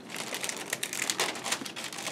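Clear resealable plastic bag crinkling as a model-kit sprue sealed inside it is handled, a continuous run of small irregular crackles.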